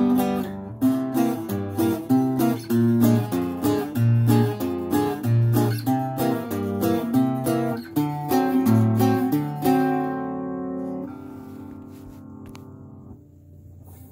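LaBestia bajo quinto, a ten-string Mexican bass guitar, played with a run of picked notes and strums over bass notes. About ten seconds in, a last chord is left to ring and slowly die away, showing off the instrument's resonance.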